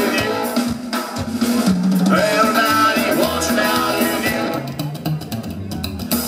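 Live psychobilly band playing an instrumental stretch, drum kit to the fore over upright double bass and electric guitar. The sound thins out briefly about five seconds in, then the full band comes back in.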